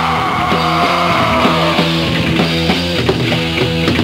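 Rock band playing live: electric guitars, bass and drums in a repeating riff, with a long note sliding down in pitch over the first couple of seconds.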